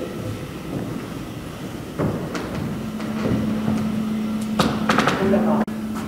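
Footsteps of two people walking across a gallery floor, with a few light knocks, over a steady low hum of room ventilation.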